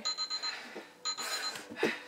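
Electronic workout interval timer beeping twice, two identical steady beeps about half a second long and a second apart, marking the end of an exercise interval. A short loud breath follows near the end.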